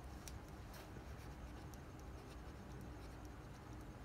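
Felt-tip marker writing on paper: faint, short, irregular scratches of the pen strokes over a low steady background hum.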